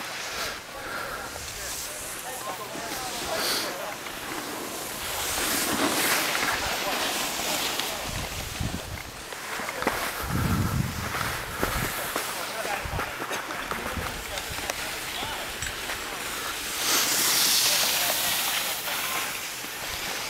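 Wind buffeting the camera microphone outdoors, a steady hiss with low rumbling gusts about six and ten seconds in and a brighter rush near the end.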